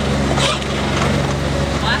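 A small sightseeing ride train running steadily, its motor giving a constant low hum with light mechanical rattling from the moving cars.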